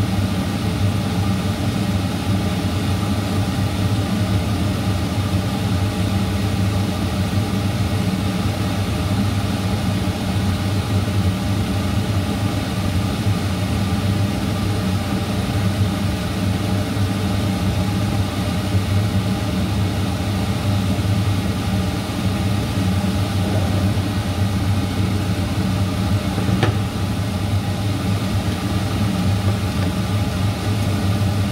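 Steady, unchanging hum of a kitchen appliance motor running beside a cooking pan, with a low drone and a few steady tones over it; one brief click near the end.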